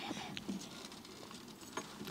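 Faint rustling and a few scattered light clicks as people shift around a lectern microphone, with sharper ticks at about a third of a second in and again near the end.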